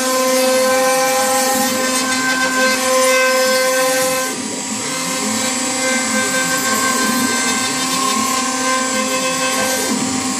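CNC router's spindle running at a steady whine while the end mill cuts a circular pocket into a pine block. Beneath it, the stepper motors' pitch rises and falls over and over as the gantry traces the curve.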